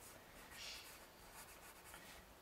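Faint scratching of a pencil drawing strokes on paper, a little stronger about half a second in.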